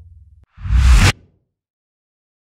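The last held notes of the song dying away, then a single whoosh sound effect with a deep bass swell, about half a second long, that cuts off suddenly, as a logo-reveal sting.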